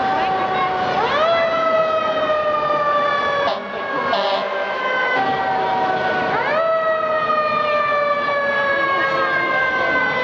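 An emergency vehicle siren wails, rising sharply about a second in and again near the middle, each time sliding slowly down in pitch afterwards.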